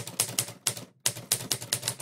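A rapid, uneven run of sharp clicks or taps, about six a second, broken once by a brief dropout.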